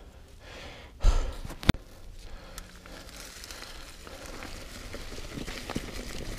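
A mountain biker's heavy breathing, with one loud sigh-like exhale about a second in and a sharp single click from the Commencal Meta V4.2 mountain bike just after. The tyres then rattle and crunch over dry leaf litter, growing louder near the end.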